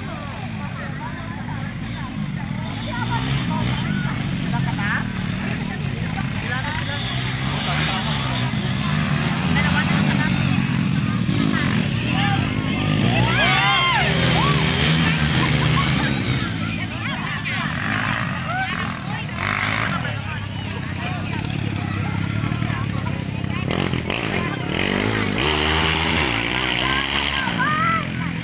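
Motorcycle engines running across an open field, their sound rising and falling, mixed with spectators talking and calling out.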